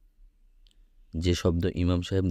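An audiobook narrator's voice reading aloud in Bengali. It starts about a second in, after a brief pause that holds a faint click or two.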